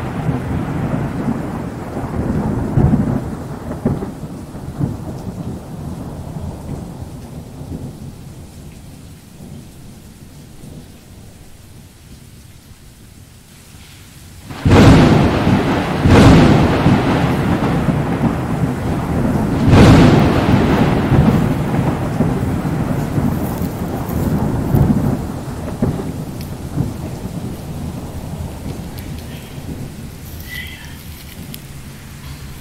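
Thunder: a low rumble fading away over the first half, then a sudden loud clap about halfway through, followed by two more peals that rumble as they fade, with rain falling behind it.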